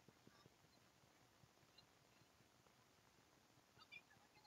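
Near silence: faint steady hiss of room tone, with a brief faint sound just before the end.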